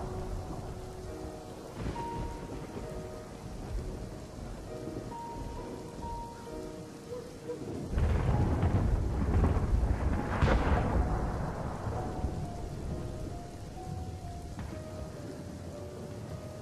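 Slow, sparse background music with held notes over a steady noisy hiss. About eight seconds in, a long deep rumble swells for some four seconds, loudest near the middle of it, then dies away.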